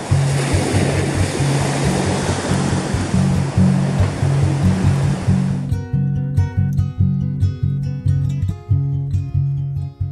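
Waves breaking on a sandy beach, mixed with background music that has a steady bass line. A little over halfway through, the surf cuts off suddenly, leaving only plucked guitar music.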